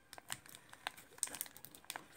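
Foil booster-pack wrapper crinkling with faint, scattered crackles as fingers pick at its sealed, crimped edge, which resists being torn open.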